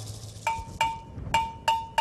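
A metal percussion bell struck five times in an uneven, syncopated rhythm, each stroke a bright ringing tone.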